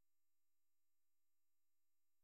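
Near silence: only a very faint steady electrical hum.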